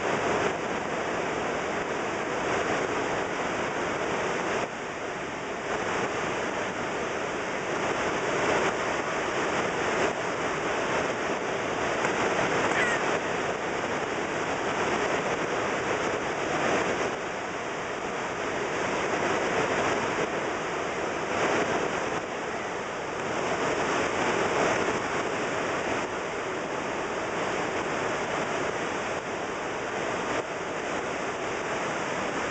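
Niagara Falls thundering over its brink: a steady, unbroken roar of falling water that swells and eases slightly in loudness.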